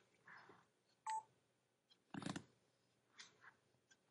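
Near silence: room tone broken by a few faint, brief sounds, one of them a short beep about a second in.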